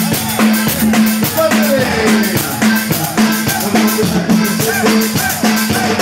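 Live cumbia band playing at full volume: button accordion melody over drum kit and bass, with an even dance beat of about four percussion strokes a second.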